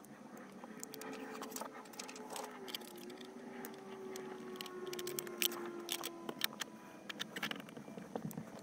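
Faint crinkling, rustling and small clicks of a thin plastic electrostatic windshield film being peeled from its backing and pressed onto the glass by hand. A faint steady hum sits underneath from about a second in until about six seconds.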